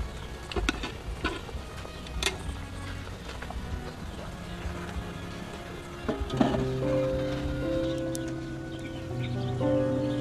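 Pig feet bubbling and sizzling in a wok of cola, with sharp clicks of metal tongs against the wok. About six seconds in comes a clatter as a metal lid goes on the wok, and then background music with long held notes takes over.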